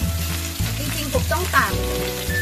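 Chunks of pork leg sizzling as they sear in a frying pan, with background music carrying a steady bass beat over the sizzle.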